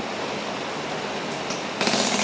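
Electric fan with coarse sandpaper taped to its blades, running on its highest setting against bare skin: a steady whirring rush that grows louder and harsher near the end as the spinning sandpaper grinds on the leg.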